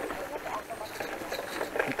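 A bicycle rolling along a rutted dirt track: low, steady tyre and ride noise with scattered small rattles and clicks.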